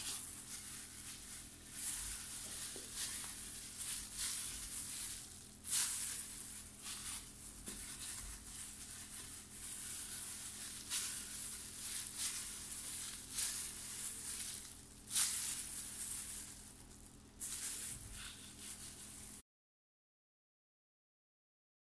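Thin plastic disposable glove crinkling and rustling in irregular bursts as a gloved hand squeezes portions of raw çiğ köfte paste, the loudest crackles about 6 and 15 seconds in. The sound cuts off suddenly just before the end.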